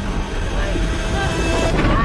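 A deep, steady low rumble from the film's sound mix, with short strained vocal sounds from a person over it.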